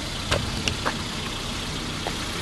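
Kia Rio's 1.4-litre petrol engine idling steadily, with a few light clicks and knocks from the door and interior as someone climbs out of the car.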